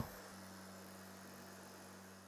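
Faint steady low hum over a light hiss.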